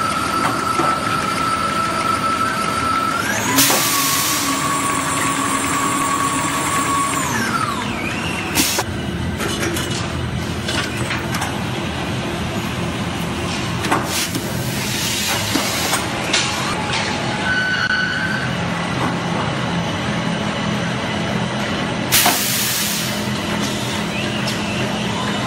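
Toilet roll rewinding and wrapping line running: a steady motor whine that shifts pitch and winds down about seven seconds in, as a start-stop rewinder does between rolls. Several loud bursts of compressed-air hiss from pneumatic actuators come a few seconds apart.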